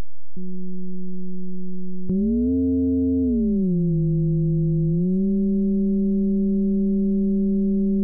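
Synthesized FM tone from a Pure Data patch: a sine oscillator frequency-modulated by a 40 Hz oscillator at a depth of 100 Hz, sounding as one steady pitched tone with overtones. Its pitch follows the carrier frequency being dragged by hand. It jumps about half a second in, glides up and back down after a click near 2 s, then steps up slightly near 5 s and holds.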